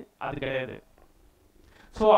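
A man speaking a short phrase for about half a second, then a pause of quiet room tone for about a second.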